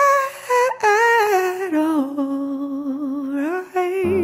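A lone voice hums a wordless melody with vibrato, sliding between notes, with little or no accompaniment. Steady accompaniment tones come in right at the end.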